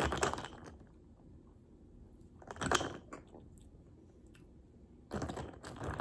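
A wooden straw stirring a drink in a glass mason jar: scattered scrapes and light clicks, with one short, louder burst of noise about two and a half seconds in and rustling picking up again near the end.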